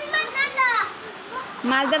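A young child's high-pitched voice calling out, once at the start and again near the end.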